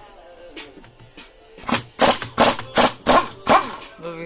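Half-inch Ingersoll Rand pneumatic impact wrench hammering in about six short trigger bursts over roughly two seconds, loosening the cylinder bolts. Background music plays underneath.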